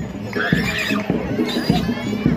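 High, shrill wailing cries that rise and fall, heard twice, over a regular drum beat.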